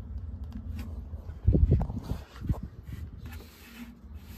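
Handling noise inside a carpeted subwoofer box: a few dull thumps and rubs as a hand and camera bump against the box and the plastic port, clustered about one and a half to two and a half seconds in, over a steady low rumble.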